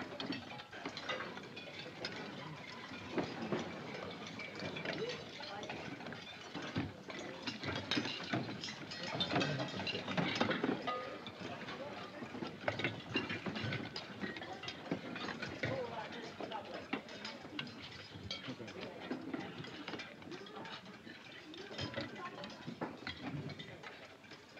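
Dining-hall noise of many people eating together: an indistinct murmur of voices, with spoons clinking and scraping against bowls.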